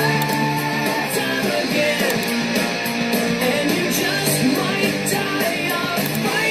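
Background rock music with guitar, playing steadily.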